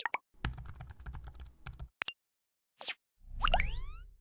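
Motion-graphics sound effects from an animated end card: a quick run of keyboard-typing clicks for about a second and a half, two short plops, then a rising swoosh with a low rumble near the end.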